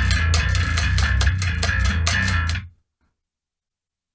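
Electric bass guitar through an amp rig playing a fast, driving riff of evenly picked low notes with lots of grind, heavy in the low end. It stops abruptly under three seconds in.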